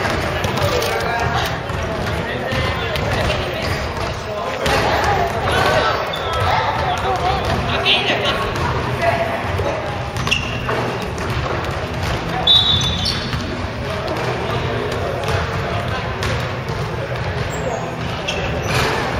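A basketball bouncing on a wooden gym floor during play, with players' voices calling out over it.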